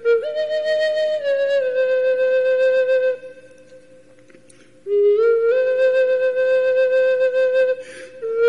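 A flute playing a slow tune of long held notes that step up and down in pitch. It breaks off for about a second and a half in the middle, then carries on.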